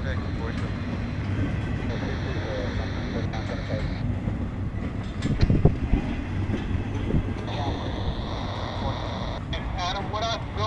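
Empty double-stack intermodal well cars of a long freight train rolling past: a steady rumble of steel wheels on rail, with a short cluster of louder knocks in the middle.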